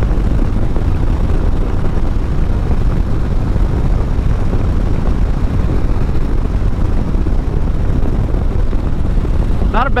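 Harley-Davidson Street Bob's Milwaukee-Eight 114 V-twin engine running steadily at cruising speed, mixed with wind and road noise.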